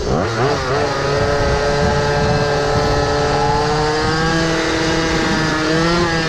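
Go-ped scooter's small two-stroke engine revving up sharply just after the start, then holding a steady whine whose pitch climbs slowly as it rides along under throttle.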